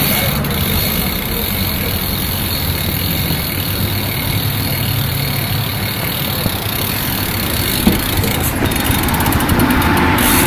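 A BMX bike rolling along a brick-paved footpath and onto the road: steady tyre and riding noise with low rumble, picked up by a phone carried on the ride, with one short knock about eight seconds in.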